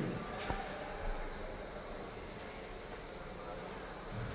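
Room tone in a lecture hall: a faint, steady hum, with one faint click about half a second in.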